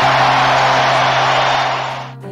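A large stadium crowd roaring and cheering in one dense, steady roar that drops away near the end. A low, held note of music comes in under it at the start.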